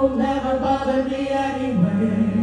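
A singer holding long notes over a live symphony orchestra, the voice stepping down lower near the end.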